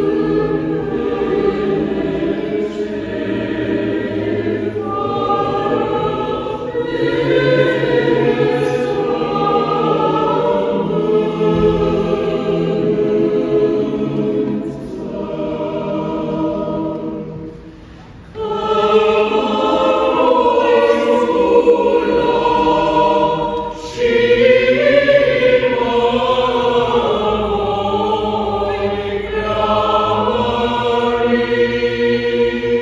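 Mixed choir of women's and men's voices singing a sacred choral piece without accompaniment, in sustained phrases, with a softer passage and short pause a little past halfway and a brief break near the end.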